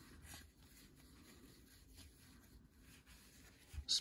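Faint, soft rubbing and rustling of paper trading cards sliding over one another as they are flipped through by hand.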